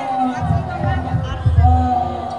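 Jaranan (kuda lumping) accompaniment over the crowd: irregular deep drum thumps, loudest about one and a half seconds in, under a long wavering high melody line.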